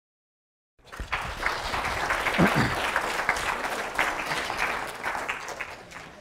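Audience applauding, starting about a second in and fading away near the end.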